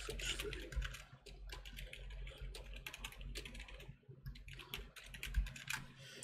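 Typing on a computer keyboard: quick, irregular keystrokes with a brief pause about four seconds in.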